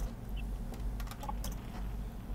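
Typing on a laptop keyboard: a few irregular key clicks over a steady low hum.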